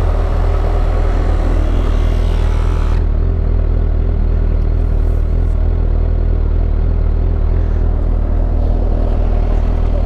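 Portable electric tyre inflator running steadily with a low buzzing hum as it pumps air into a scooter's punctured rear tyre. A hiss over it stops about three seconds in.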